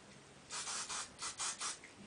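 Aerosol hairspray can spraying in four hissing bursts starting about half a second in: one longer spray, then three short ones.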